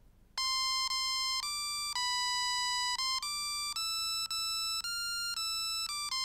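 LEGO Mindstorms EV3 brick's built-in speaker playing a simple melody of buzzy electronic beep notes from a program of Play Note blocks: a home-made attempt at a national anthem. About a dozen notes step up and down in pitch, mostly evenly timed, with one note held about twice as long and two very short ones.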